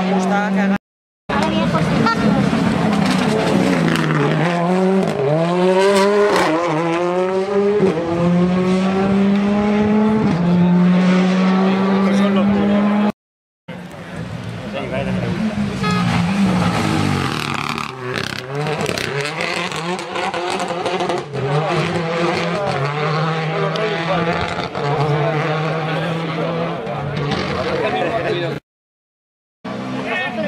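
Rally car engines running hard on a tarmac stage, revs climbing and dropping again and again through gear changes, with stretches of steady revs. The sound breaks off abruptly twice, about a second in and about halfway through.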